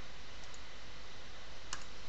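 A few faint, brief computer mouse clicks, the clearest near the end, over a steady low hiss.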